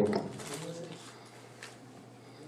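A man's spoken question trails off, then a quiet pause with a steady low hum and a brief, faint, low hum-like sound about half a second in.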